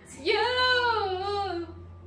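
A woman's voice holding one long sung note that rises at first and then slowly falls, lasting about a second and a half.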